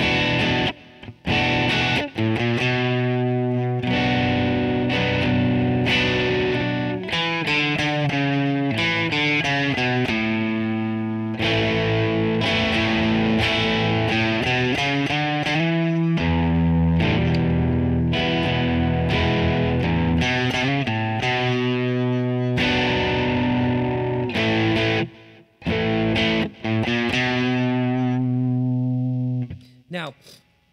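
Distorted electric guitar playing a slow passage of ringing chords in B minor, with a few brief breaks. The playing stops just before the end.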